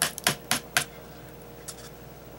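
Hard plastic tapping on a plastic funnel, four sharp taps in the first second then two faint ones near the end, knocking diatomaceous earth powder down through the funnel.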